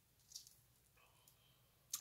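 Near silence: room tone, with one faint, brief soft sound about a third of a second in.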